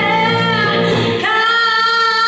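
A woman singing with electric guitar accompaniment, live; past the middle she holds one long, steady note as the guitar underneath thins out.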